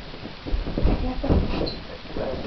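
Indistinct voices with a few low thuds, and a brief high squeak near the end.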